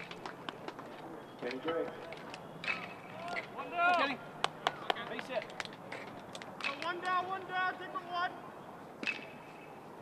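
Distant shouting and calling voices of players and spectators across a baseball field, in several bursts, with sharp clicks and knocks scattered through, the loudest about halfway in.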